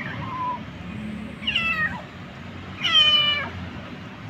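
A calico kitten meowing twice, about a second and a half apart, the second louder and longer. The cries come from a kitten in pain while walking on a swollen hind leg.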